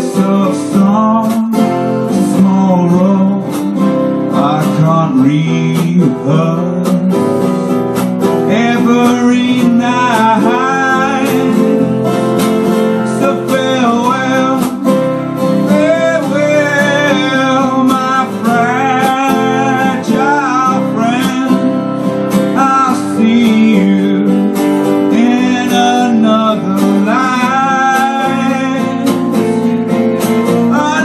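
Two acoustic guitars playing a song live, with a man singing the melody over them.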